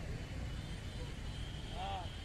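Congested city traffic: a steady low rumble of idling and creeping cars and auto-rickshaws, with people's voices in the street. Near the end there is a short pitched call that rises and falls.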